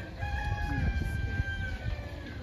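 A rooster crowing once: one long call held at a steady pitch for most of two seconds.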